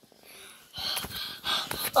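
A child breathing hard in several short, noisy gasps, starting about a second in.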